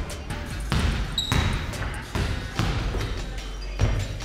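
Basketball bouncing on a hardwood gym floor, a handful of dribbles at uneven spacing, with a brief high squeak about a second in.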